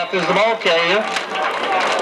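A loud voice calling out for about the first second, then the noise of a crowd at an outdoor football game with scattered voices through it.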